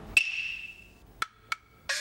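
Traditional opera-style percussion accompanying a glove-puppet show: a sharp ringing strike, then two crisp wooden clacks about a third of a second apart, then a gong stroke whose pitch slides near the end.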